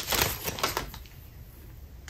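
Packaging of a car phone mount being handled during an unboxing: a quick run of crackling clicks through the first second, then only a few faint ticks.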